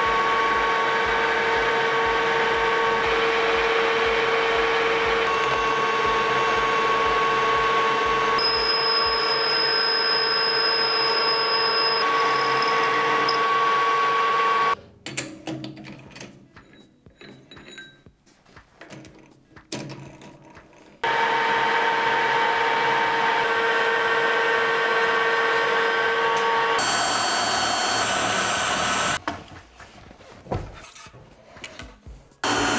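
Metal lathe running with a steady hum and whine while turning a steel pin. About 15 seconds in it stops, leaving a quieter stretch of small clicks and knocks as the part is handled in the chuck, and about 21 seconds in it runs again. A brighter, hissier noise follows shortly before the end.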